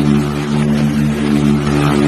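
A steady, low mechanical hum of several even tones, like a motor running nearby.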